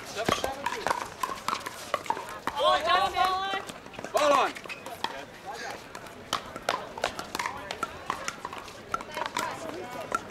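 Pickleball paddles striking plastic balls, sharp hollow pops at irregular intervals from this and neighbouring courts. Raised voices call out about two and a half to four and a half seconds in.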